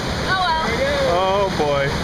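Whitewater rushing and splashing around a round river-rapids raft, a steady noisy wash of water. People's voices call out over it twice.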